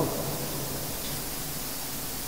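Steady hiss of background room noise picked up by the microphone during a pause in a man's speech.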